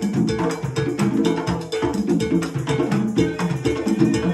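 Hand-drum ensemble playing: several congas struck by hand, with timbales and a cowbell, in a fast, steady interlocking rhythm.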